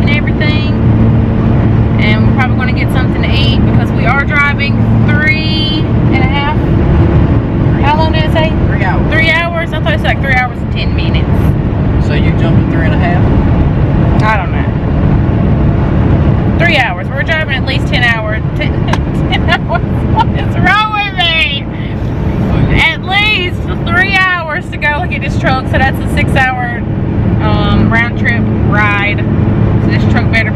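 Steady engine and road drone inside a moving truck's cab, with a person's voice over it throughout.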